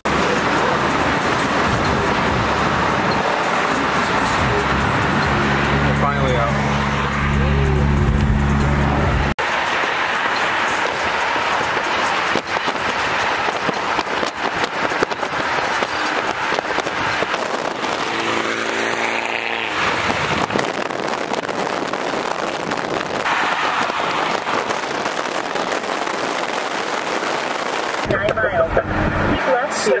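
Car driving on a highway: steady road and wind noise, with a car engine briefly revving up about two-thirds of the way through.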